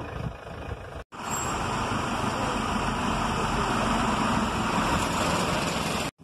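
Steady outdoor rushing noise with no clear single source. It cuts out abruptly for an instant about a second in, then resumes.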